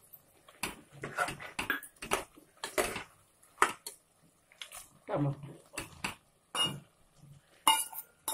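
Metal spoon stirring chunks of mutton curry in a metal cooking pot, scraping and clinking irregularly against the pot's sides.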